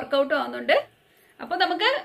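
Only speech: a woman talking, with a short pause about a second in.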